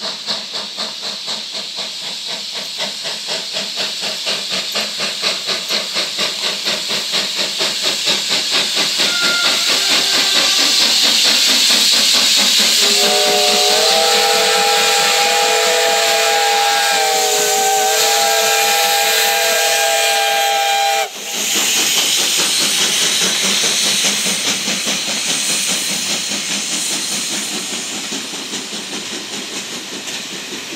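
ČSD class 555.0 steam locomotive 555.0153, a two-cylinder ex-German class 52 2-10-0, working hard on departure. Its exhaust beats come in a steady rhythm and grow louder as it approaches, with steam hiss. Its steam whistle sounds a chord of several tones for about eight seconds, then cuts off suddenly as the carriages roll past.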